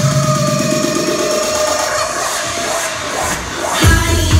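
Electronic dance music playing loud over a club sound system. The beat and bass drop away under a held synth tone for about three seconds, then the full heavy beat comes back with a rising sweep near the end.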